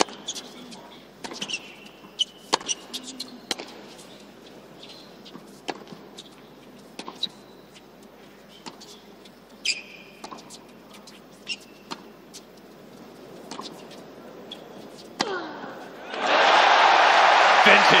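Tennis rally on an indoor hard court: racket strikes on the ball every one to two seconds, with short shoe squeaks on the court. About two seconds before the end, loud crowd cheering and applause breaks out as the point ends.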